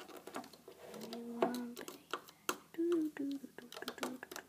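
Metal hook tip clicking and scraping against a Rainbow Loom's plastic pins as rubber bands are worked over them, a scatter of small sharp clicks. Two short hums from a person's voice, one about a second in and one near three seconds.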